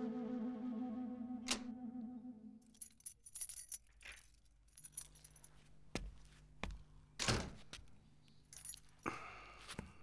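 Soft woodwind-like music fading out over the first two or three seconds, then faint jingling and clicking of keys and a few thuds as a front door is unlocked and opened.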